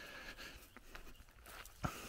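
Faint footsteps through grass, with one short click near the end.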